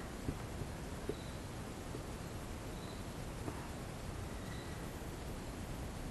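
Quiet room hiss with a few faint light taps near the start as a small painted canvas is set down on a paint-covered tray.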